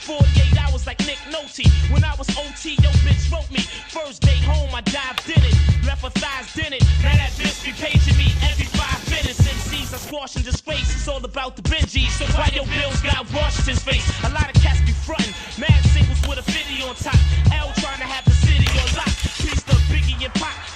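Hip hop track: a male voice rapping over a heavy bass beat, with deep bass hits about once a second.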